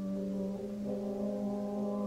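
Concert band playing soft, slow sustained brass chords that shift gently from one harmony to the next.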